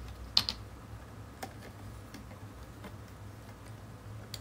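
Small sharp clicks and taps of objects being handled close to the microphone: a loud close pair about half a second in, then a few faint scattered ticks, over a low steady hum.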